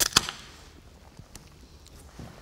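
Aluminium beer can being opened: a sharp double crack of the ring-pull tab and a short hiss of escaping gas, then a couple of faint ticks about a second later.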